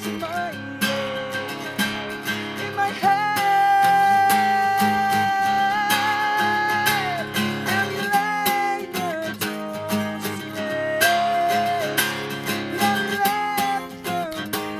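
Cutaway acoustic guitar strummed in a steady rhythm while a man sings over it. About three seconds in he holds one long note for some four seconds, with a slight waver at its end before the melody moves again.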